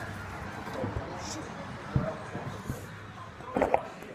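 Rustling and knocking of a hand-held phone while its holder climbs, with one sharp knock about two seconds in and two quick knocks near the end.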